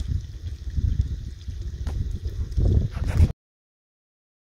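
Wind buffeting a handheld camera's microphone: an uneven low rumble with a few faint clicks, cut off suddenly a little over three seconds in.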